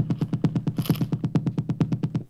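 Roland TR-8S drum machine kick drum played as a fast roll, about ten hits a second, forming a build-up rise effect for a house track, with a short hiss about a second in.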